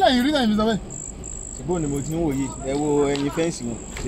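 Crickets trilling as a steady high note, with a person's voice over it, louder, at the start and again in the middle.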